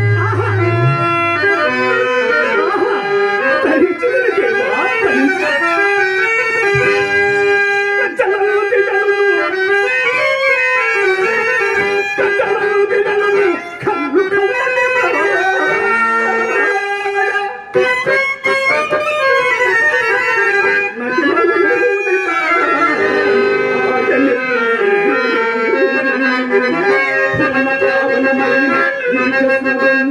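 A man singing a Telugu drama verse (padyam) with drawn-out, ornamented notes that bend up and down, accompanied by a harmonium's sustained reed chords.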